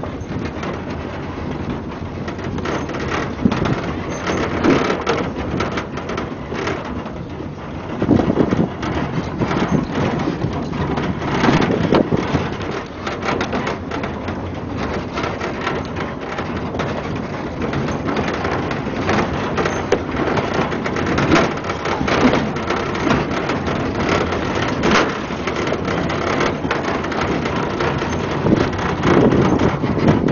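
Pickup truck driving on a rough dirt track, with wind buffeting the microphone in the open truck bed and a continual run of knocks and rattles from the bumpy ride.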